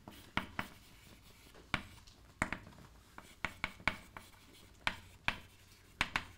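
Chalk writing on a blackboard: a dozen or so short, irregular taps and scratches as the chalk strikes and drags across the board.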